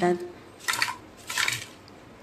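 Crisp, freshly fried moong dal bhajis tumbling off a wire-mesh frying strainer onto a plate in two short, dry, crunchy rattles, the sound of bhajis that have fried crisp.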